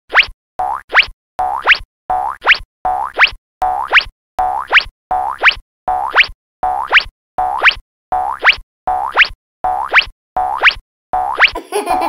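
Cartoon 'boing' sound effect repeated about fifteen times, roughly every three quarters of a second, each a short tone that sweeps steeply upward in pitch, with silence between. About eleven and a half seconds in the repeats give way to music.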